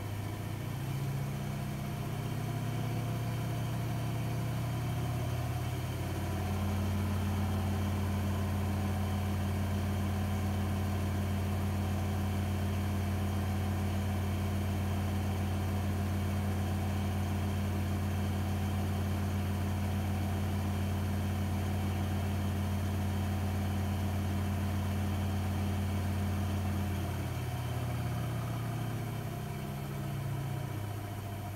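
Zanussi ZWF844B3PW front-loading washing machine spinning its drum: the motor hum rises in steps over the first few seconds, holds a steady speed for about 20 seconds, then winds back down near the end.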